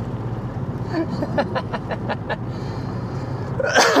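Steady low rumble of a car's engine and tyres heard inside the moving car's cabin. About a second in, a short run of quick breathy laugh pulses.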